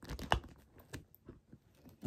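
Handling of a quilted leather handbag and its brass chain strap: a few light clicks and rustles as the bag is lifted, the loudest about a third of a second in, then fainter ticks.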